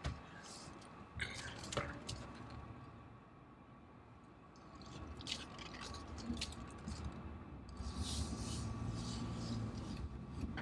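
Car cabin sounds: a few small clicks and rubs from handling, then low engine and road noise building from about halfway through as the car pulls away.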